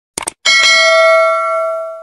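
A short click, then a bell struck once and left to ring with a bright, many-partial tone that slowly fades and is cut off suddenly near the end.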